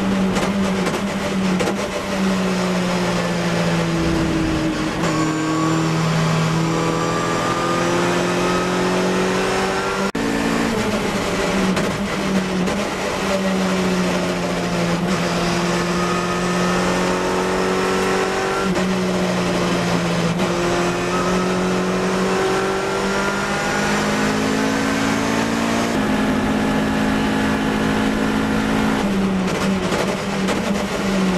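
Ginetta race car engine heard from inside the cockpit on a flat-out lap. The engine note climbs steadily under acceleration, steps down sharply at each upshift, and falls away under braking for corners.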